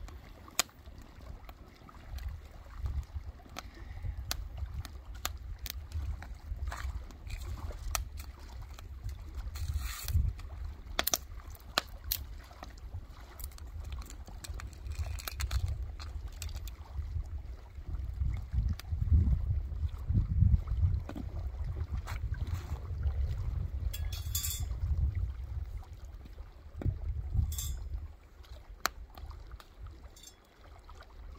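Scattered clicks and knocks of twigs and split kindling being handled and set onto a small wood cooking fire, over a continuous low, gusting rumble of wind on the microphone.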